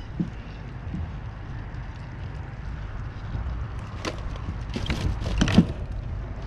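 Handling noise while a sheepshead is unhooked in a mesh landing net: a steady low rumble with a few sharp clicks and scrapes about four seconds in and a cluster more near the end.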